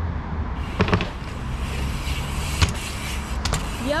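Dirt jump bike's knobbly tyres rolling over block paving with a steady rush, broken by a few sharp knocks as the bike hops up and lands, the loudest about a second in and again past the middle.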